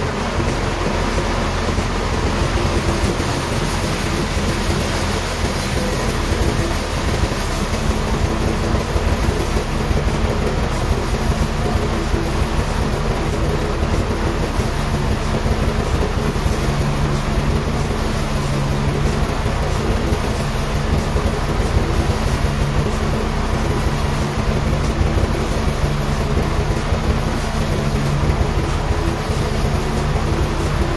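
Large vertical band sawmill cutting a slab lengthwise from a big hardwood log: steady, loud machine and blade noise with a low hum underneath, without a break.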